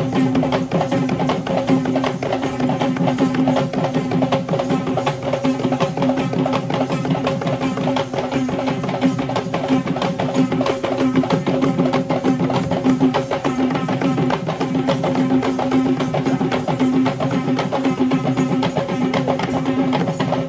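Traditional Sri Lankan Kandyan dance music: fast, dense drumming with a steady held note sounding over it throughout.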